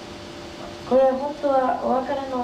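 Speech: a woman talking over a microphone, starting about a second in, with a faint steady hum underneath.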